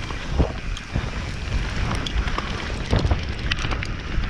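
Mountain bike rolling down a dirt trail: a steady rumble of tyres on dirt and wind on the camera microphone, with a few sharp knocks and rattles from the bike over bumps, the loudest about half a second in and near three seconds in.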